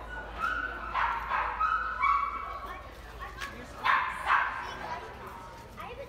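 Staffordshire terrier puppy whining and yipping: a run of short high cries in the first two seconds, then two sharp yips about four seconds in.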